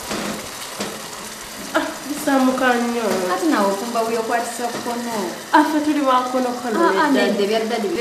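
Food sizzling in a pan, a steady frying hiss. From about two seconds in, a woman's voice talking over it is the loudest sound.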